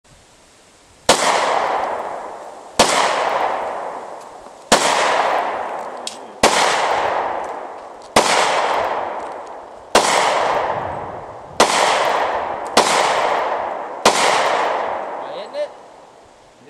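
A 9mm pistol fired nine times at a steady, unhurried pace, about one shot every second and a half to two seconds. Each shot is followed by a long echo dying away.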